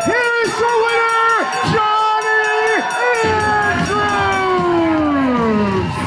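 A loud voice calling out wordlessly: a series of held yells on the same pitch, then one long call falling steadily in pitch over the last few seconds.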